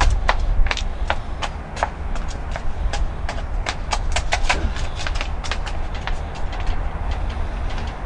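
Quick, sharp footsteps clicking on brick paving, about four or five a second, over a low wind rumble on the microphone.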